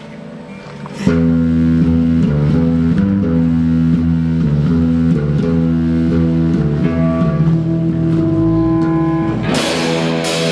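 Amplified electric guitars and bass guitar of a rock band starting a song: after a quiet first second the guitars come in loud with held, repeated chords. Near the end the drum kit crashes in with cymbals.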